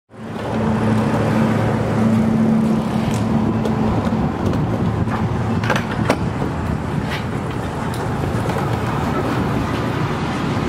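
Steady vehicle and traffic noise, with a low engine hum that drops away about four seconds in. A few sharp metallic clicks come around six seconds in as a fuel pump nozzle is handled and put into a motorhome's filler.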